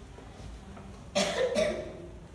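A person coughing twice in quick succession, a little over a second in.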